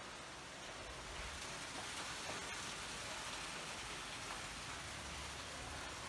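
Rain falling steadily, an even hiss.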